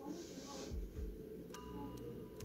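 Quiet horror-trailer soundtrack: a soft hiss, then a sharp tick about halfway through followed by a thin, held ringing tone.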